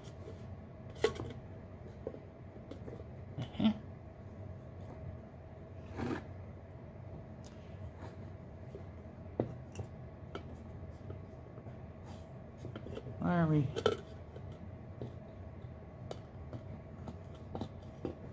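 Scattered light clicks and knocks of a plastic travel-mug lid being handled and pressed onto a stainless steel mug, with a short grunt a little past the middle.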